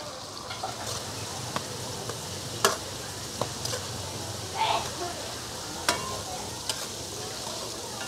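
Palm weevil grubs frying in hot oil in a wok: a steady sizzle as a metal ladle stirs them. A few sharp clicks and pops are scattered through it.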